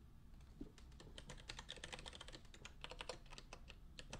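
Faint, quick, irregular typing on a computer keyboard, starting about half a second in and stopping just before the end.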